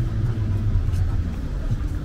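Low steady rumble of road traffic, under the chatter of a crowd.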